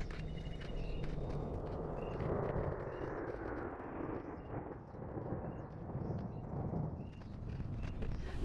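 Outdoor ambience: a steady, fairly quiet rushing noise with a low rumble, and faint short high chirps repeating about once a second.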